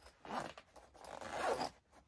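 Zip of a black Oakley fabric waist bag being pulled by hand: a short rasp, then a longer one about a second in.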